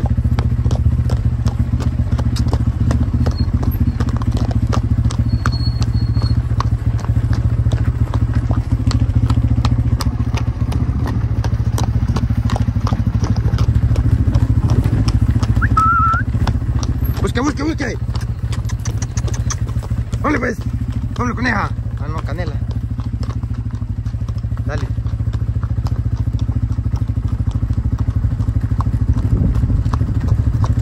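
Motorcycle engine running steadily at low speed, creeping along behind walking cattle. A few short shouted calls from a person come through about two-thirds of the way in.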